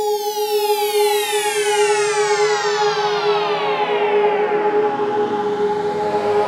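Synthesized logo sting sound effect: a long sweep gliding steadily downward in pitch for about five seconds over a steady held drone.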